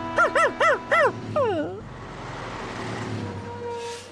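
Cartoon puppy yipping four times in quick succession, then a falling whine, followed by a steady whooshing hiss, all over background music.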